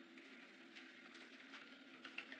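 Near silence: a faint steady hiss with a faint low held tone beneath it.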